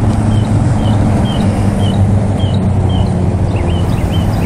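A vehicle engine idling with a steady low hum, while a small bird chirps over it about twice a second.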